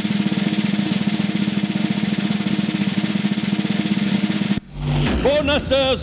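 Snare drum roll sound effect, a fast, even roll building suspense before a bonus reveal. It cuts off sharply near the end, followed by a brief low hit.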